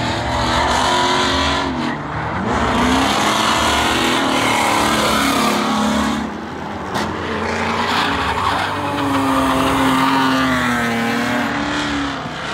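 Drift cars sliding through the course, their engines revving hard with the pitch rising and falling, over continuous tyre squeal. The sound dips briefly a little past the middle, then builds again.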